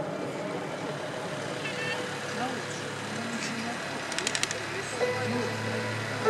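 Murmur of a stadium crowd, with a quick run of sharp clicks about four seconds in, then a held synthesizer chord starting about five seconds in as the keyboard piece begins.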